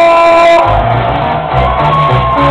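Loud hip-hop DJ music over a ballroom sound system: a held note at first, then a heavy bass line comes in about half a second in.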